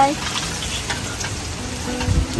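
Butter sizzling as it melts in hot oil in a shallow metal bò né pan over a tabletop burner, a steady frying hiss.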